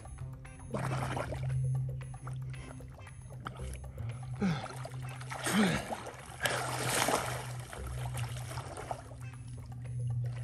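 Background music over splashing and sloshing water as a person wades, swims and lunges through shallow river water. Bursts of splashing come about a second in and again from about five to eight seconds.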